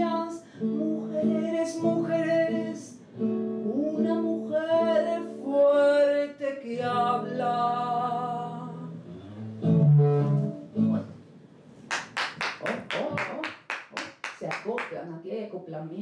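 Woman singing the closing lines of a tango over guitar accompaniment with long held chords, ending on a low held note about ten seconds in. A few seconds of steady hand clapping follow the end of the song.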